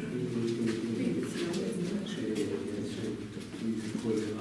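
Indistinct, muffled voices of people talking, with scattered footsteps on a hard floor.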